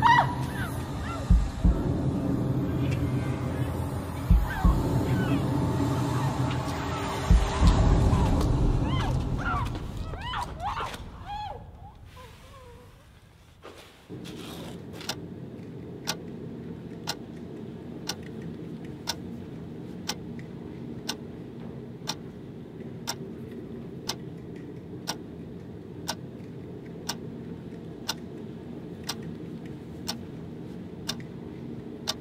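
Tense horror film score with low thumps, fading out about twelve seconds in. After a short hush, a clock ticks about once a second over a steady low hum.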